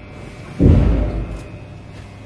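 A single deep thump about half a second in, fading out over most of a second.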